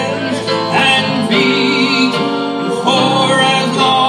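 Live country band music: electric guitars, keyboard and pedal steel guitar playing together at full volume.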